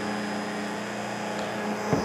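Stick hand blender motor running steadily in a jug of hot chocolate while boiling water is poured in.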